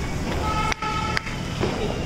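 A vehicle horn sounds for under a second, starting about half a second in and breaking off once midway, over a steady bed of street noise. A single sharp click comes just as the horn stops.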